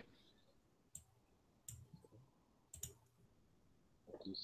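Three faint computer mouse clicks, spaced about a second apart, with near silence between them.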